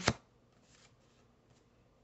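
A single sharp snap of a stiff paper card being handled, just after the start, followed by faint paper rustling.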